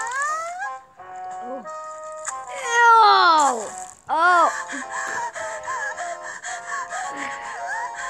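A high-pitched voice wailing and sobbing over background music. It opens with a short rising squeal, then gives one long falling wail about three seconds in, the loudest moment, followed by shorter arching sob-like cries.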